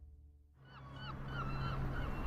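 Background music fades out to near silence. Then faint outdoor ambience comes in with a run of short, repeated bird calls.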